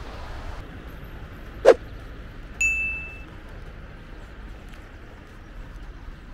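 Steady low background rumble, broken by one sharp knock about one and a half seconds in and a single short, bright ding about a second later.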